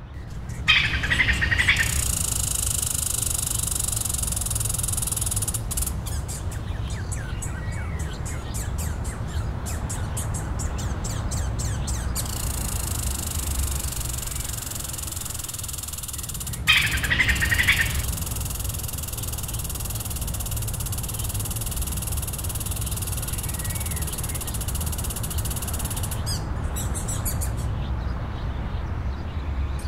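Outdoor nature ambience with birds chirping over a steady high hiss and a low rumble. There are two short, louder bursts of calls, about a second in and again past the middle, and a stretch of rapid clicking in between.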